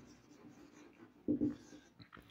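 Marker pen writing on a whiteboard: faint scratchy strokes, with one short, louder stretch about a second and a half in.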